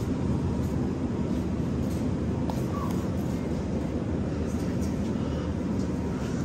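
Steady low rumble of supermarket background noise around the refrigerated shelves.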